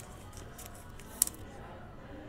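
Faint handling of a sleeved trading card, light plastic ticks with one sharp click just over a second in.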